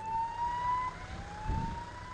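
Siren wailing in the distance: a thin tone rising slowly in pitch, dropping back, and rising again over about a second. A soft low thud comes about one and a half seconds in.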